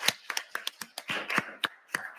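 Scattered hand claps from a small audience as applause dies away: a dozen or so sharp claps at irregular intervals.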